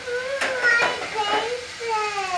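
A young child's high-pitched wordless voice, rising and falling in pitch, with one sharp click about half a second in.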